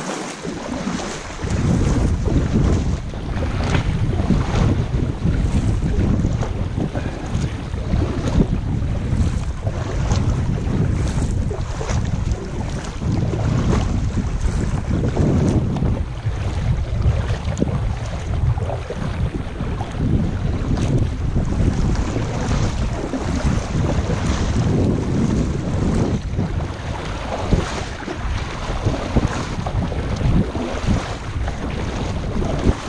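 Wind buffeting the microphone of a camera on a kayak: a loud, gusty low rumble that sets in about a second in, with water sloshing against the kayak beneath it.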